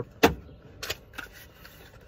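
A sharp knock, then a couple of brief, fainter rustling sounds, as a passport and a small pump bottle of alcohol are handled.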